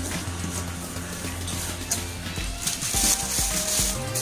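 Background music, with crinkling and rustling of the plastic bag wrapped around the vacuum cleaner and its hose as they are handled inside the cardboard box, loudest in the second half.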